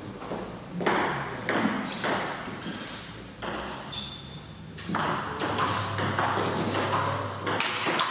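Table tennis ball bouncing and being struck: a run of sharp, irregular clicks of the ball off the table and the rubber paddles.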